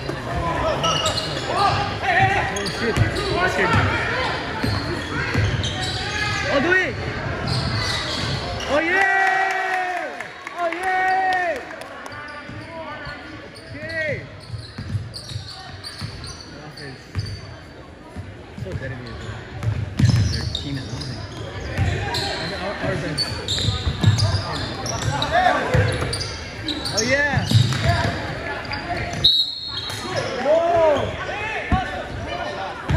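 Basketball dribbled and bouncing on a hardwood gym floor, with players' and spectators' voices echoing in the gym. Two loud shouted calls come about nine and eleven seconds in.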